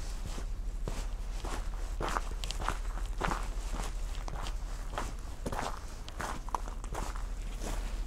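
Footsteps walking on a gravel path at a steady pace, a little under two steps a second.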